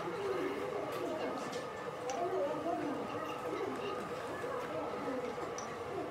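Indistinct background voices chattering, with no clear words, and a few faint clicks.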